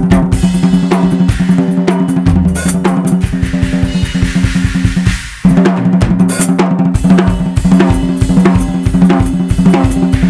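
Drum solo on a full acoustic drum kit: rapid snare, tom and kick-drum strokes with cymbal crashes, over a steady low note held underneath. The playing drops out for a moment about five seconds in, then comes back in hard.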